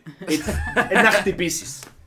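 A small group laughing together over talk, a woman's open-mouthed laugh among them.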